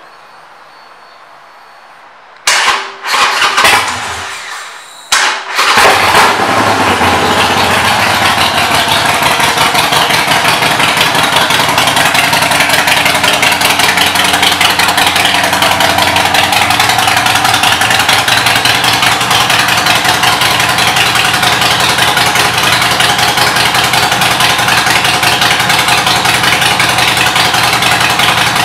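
A 2014 Harley-Davidson Sportster 72's 1200 cc air-cooled V-twin, fitted with Vance & Hines shorty exhaust pipes, is started about two and a half seconds in. It runs unevenly for a couple of seconds, fires up again just after five seconds, then settles into a steady idle.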